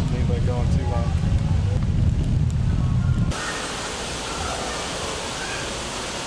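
A shopping cart rolling across a hard store floor, a heavy low rumble. About three seconds in it cuts off abruptly to a steady rush of running water at an aquarium tank.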